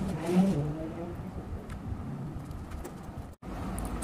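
A dove cooing once in the background, a short call of a few low notes stepping down in pitch, within the first second.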